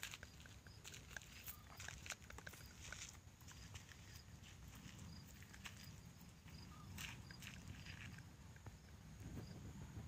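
Near silence outdoors: scattered faint clicks and crackles over a low rumble, with a faint high chirp repeating evenly about twice a second.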